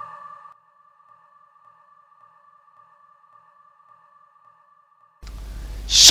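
Tail of an electronic intro jingle: the music dies away in the first half second, leaving a faint sustained synth tone with soft pulses about twice a second. A low background hum comes in near the end.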